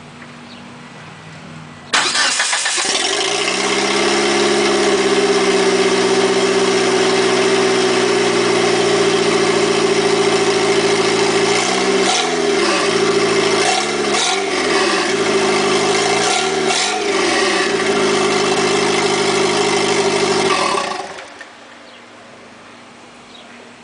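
Turbocharged Mitsubishi 4G63 four-cylinder of an Eclipse GST with a Forced Performance T28 turbo and no downpipe, the exhaust dumping straight out of the turbo. It starts suddenly about two seconds in, idles loudly, is revved briefly three times in the middle, then shuts off near the end.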